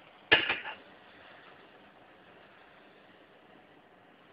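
A quick clatter of kitchenware on a frying pan, a few sharp knocks close together about a third of a second in. After it comes a faint, steady sizzle from pineapple rings caramelizing in the pan.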